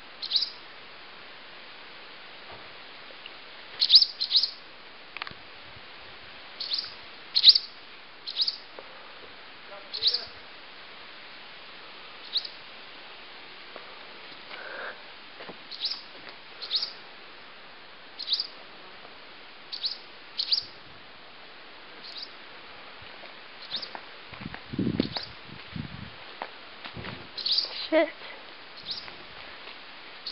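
Short, sharp bird calls repeated every second or two, from birds that nest in a barn and swoop at someone approaching it, calling in alarm. Near the end there is handling noise and a laugh.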